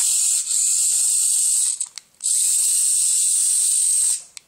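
Small hobby servos driving a robot's mecanum wheels, a steady high-pitched whir. It stops briefly about two seconds in, then starts again.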